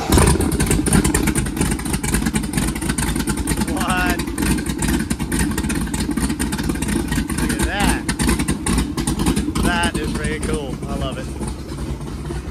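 Skip White-built 551 hp small-block Chevrolet stroker V8 in a Donzi Sweet 16 boat firing on its first start-up. It catches right at the start and then runs steadily and loudly, with rapid, even exhaust pulses.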